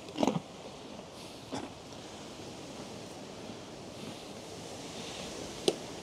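Steady wind and rustling noise close to the microphone, with one sharp click near the end.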